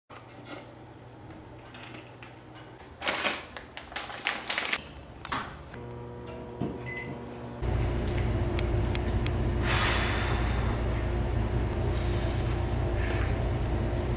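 A few sharp clinks and knocks of food and utensils handled in a metal kitchen bowl. About halfway through, a steady low electrical hum sets in, and twice a man sucks in air sharply through his mouth to cool a mouthful of very hot chicken.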